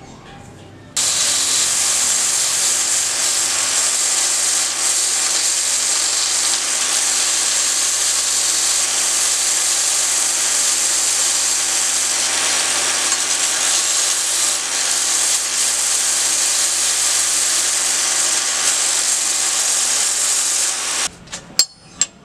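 Homemade belt sander driven by a repurposed water-pump motor, running with a steel rod held against the abrasive belt: a steady hiss of sanding over the motor's hum. It starts abruptly about a second in and cuts off about a second before the end, followed by a couple of sharp clicks.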